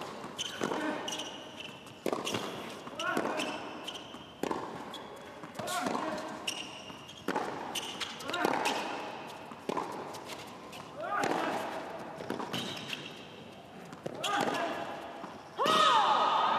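Tennis ball struck back and forth in a baseline rally on a hard court: sharp racket hits and bounces about every second or so, in a large hall with crowd voices. The voices swell suddenly near the end as the point finishes.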